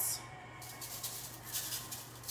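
Salt shaken from a small cup onto oiled spaghetti squash halves on a foil-lined tray: a faint, quick rattle of falling grains starting about half a second in.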